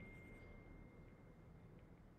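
Near silence: faint room hiss, with a thin, steady high tone dying away within the first half second.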